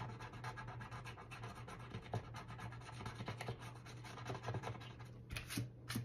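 Scratch-off coating being scraped off a paper challenge sheet with a thin tool, in many quick short strokes, a few of them stronger near the end.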